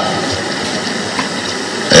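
Steady, even background noise in a hall, with no distinct event, during a pause in a man's speech into a microphone.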